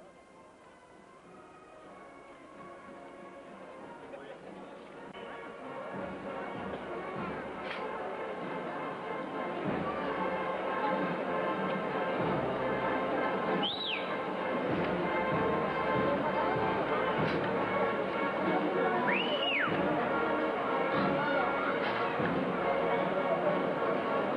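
Band music, growing louder over the first ten seconds or so and then holding steady, over a murmur of crowd voices. Two short high whistle-like notes come partway through.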